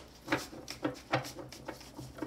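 A tarot deck being shuffled by hand and squared up: a run of soft, irregular card taps and slaps.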